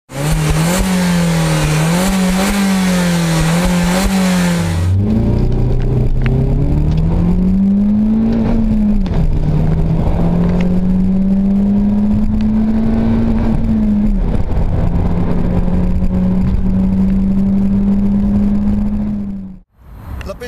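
Peugeot 207 THP's 1.6-litre turbocharged four-cylinder engine: revving up and down several times in quick succession, then pulling hard in the cabin with the note climbing, dropping at a gear change about nine seconds in, holding steady and dipping again at a second shift. The sound cuts off suddenly just before the end.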